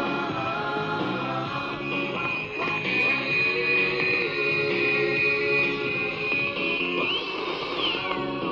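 Music with guitar received on medium wave and played through a portable radio's speaker, with a steady high whistle over it. Near the end a whistle glides up and then sweeps down.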